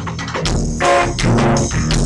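A live band playing a bossa nova arrangement of a rock song on electric guitars and a drum kit, fuller and louder from about a second in.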